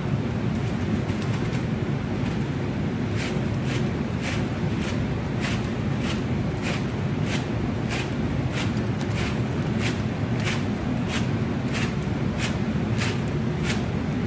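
Steady fan noise of a laminar flow hood's blower, with a regular light ticking, a little under two ticks a second, from about three seconds in until near the end.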